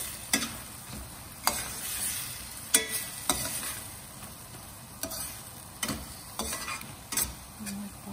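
A slotted stainless steel spoon stirring prawns frying in a stainless steel pan, the food sizzling steadily while the spoon scrapes and knocks against the pan about once a second.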